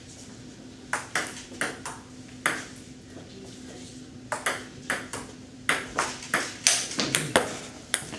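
Table tennis rally: a plastic ball clicking sharply off the paddles and the table. A few hits come in the first couple of seconds, then a pause of about two seconds, then a faster run of hits near the end.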